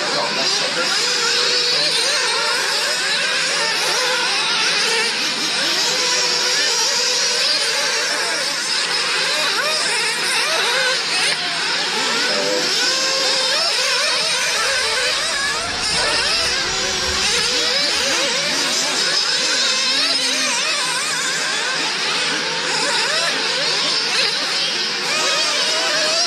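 Several nitro radio-controlled cars racing, their small glow-fuel two-stroke engines running at high revs, pitch rising and falling constantly as they accelerate and back off. A low rumble comes in for a few seconds midway.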